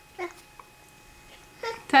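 A person's voice: a brief vocal sound falling in pitch about a quarter second in, then near the end a woman sings out "Ta-da!", holding the second syllable on one steady pitch.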